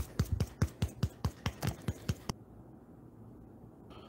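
Fingertips dabbing and patting damp sculpting putty on a rock base: a quick run of light, sticky taps, about six a second, that stops a little over two seconds in.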